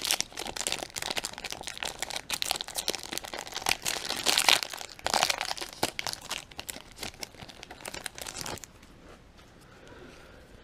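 Foil wrapper of a Topps baseball card pack being torn open and crinkled by hand, an irregular run of crackles and rips that stops near the end.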